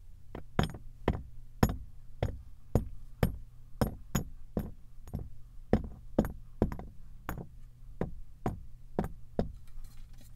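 Pieces of kinetic sand dropping into a glass tumbler one after another, each landing with a short knock, about two a second.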